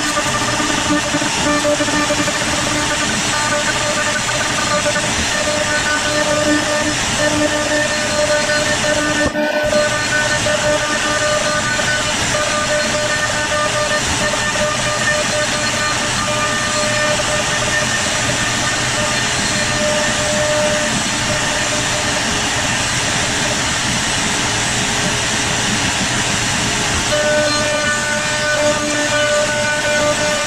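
CNC router spindle milling a wooden bowl blank with a half-inch ball-nose bit during a 3D adaptive clearing pass: a loud, steady rush of cutting noise with a faint whine whose pitch comes and goes as the bit moves through the wood. There is a brief break about nine and a half seconds in.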